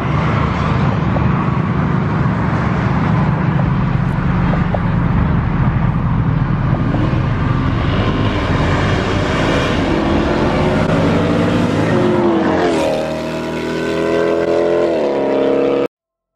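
Car engines accelerating hard along a road, loud throughout, with an engine's pitch climbing in a long rev near the end. The sound cuts off abruptly just before the end.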